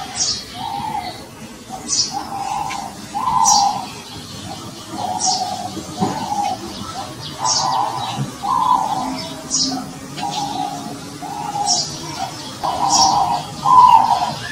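Dove cooing in a steady run of short, low notes, with another bird's brief high chirps repeating every couple of seconds above it.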